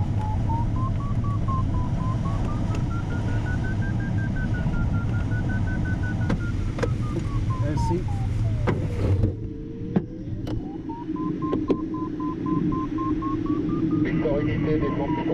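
Glider variometer's audio tone, rising and falling in pitch as the climb rate changes, over airflow noise in the cockpit of a Schempp-Hirth Ventus 2ct. A few sharp clicks come in the second half. About nine seconds in, the airflow noise drops and the tone settles to a steady pitch.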